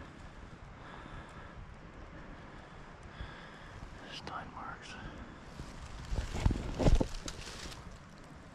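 Rustling footsteps in dry leaf litter, with two loud thumps about six and a half to seven seconds in.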